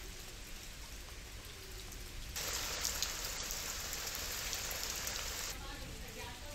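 Steady hiss of heavy rain falling. It turns louder and brighter about two and a half seconds in and eases back near the end.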